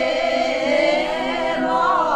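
Small folk choir singing a traditional Piedmontese song in long held notes.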